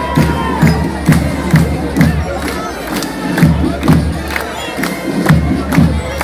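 Band music with a drum beating steadily about twice a second, over a cheering, shouting crowd.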